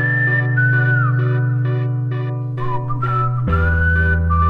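Electronic background music: a steady beat and held bass notes under a high, whistle-like lead melody that slides between notes. The bass shifts to a new note about three and a half seconds in.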